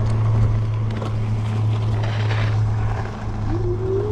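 An electric bike ridden along a dirt trail: tyres rolling over dirt and wind on the microphone, over a steady low hum. A short whine rises in pitch near the end.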